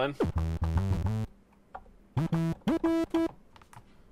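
Teenage Engineering OP-Z synthesizer notes played from a small keys controller: two short runs of notes with a pause between. Some of the notes slide in pitch, one sweeping down into the bass near the start and two gliding up in the second run.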